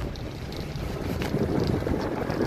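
Wind buffeting the microphone over the low rumble of a vehicle rolling slowly along a dirt road, with a few faint rattles.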